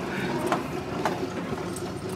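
1942 Dodge WC21 weapons carrier's flathead straight-six running as the truck drives over rough ground: a steady drone with a couple of sharp knocks about half a second and a second in.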